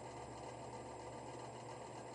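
Faint steady low hum and hiss of room tone, with no distinct events.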